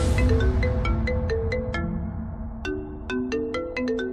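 Mobile phone ringtone playing a quick melody of short plucked notes, which pauses briefly about two seconds in and then starts again, over a low rumbling background score.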